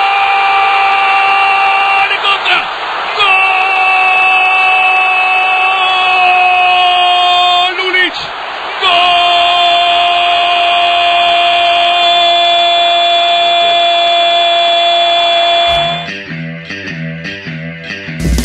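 A football commentator's drawn-out "gol" cry from the TV broadcast: one high shouted voice held in three long breaths of about five seconds each, over crowd noise. It stops near the end, giving way to quieter rhythmic sound.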